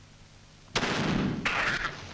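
A single shotgun blast sound effect, starting suddenly about three-quarters of a second in and dying away over about a second, as the cartoon duck is shot.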